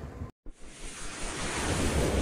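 A brief drop to silence, then a whoosh sound effect: an even rush of noise that swells steadily louder.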